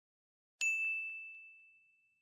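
A single bright, bell-like ding struck about half a second in, ringing on one high tone and fading away over about a second and a half, with a few faint ticks as it dies down: a logo intro sound effect.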